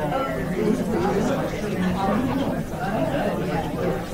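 Indistinct chatter of many people talking at once, a steady hubbub of overlapping voices in a large room.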